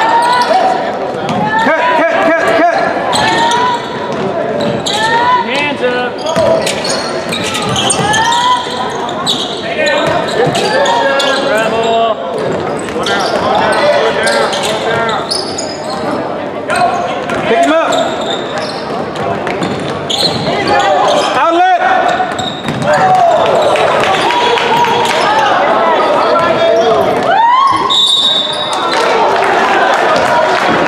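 A basketball being dribbled on a hardwood gym floor during play, with the voices of players and spectators calling out, all echoing in a large gymnasium.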